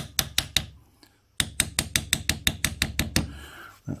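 Hammer tapping a steel punch against a nut's tab washer, metal on metal, to bend the locking tab back. It goes as a rapid run of about six taps, a short pause about a second in, then about thirteen more at some seven a second.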